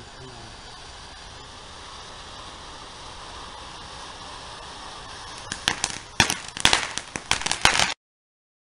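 Ground fountain firework hissing steadily as it sprays sparks. About five and a half seconds in it starts crackling: a rapid run of loud, sharp pops.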